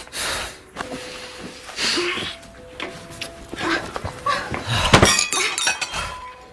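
Drinking glasses clinking and knocking on a table during a struggle, with a loud crash of breaking glass about five seconds in, amid short gasps and heavy breaths.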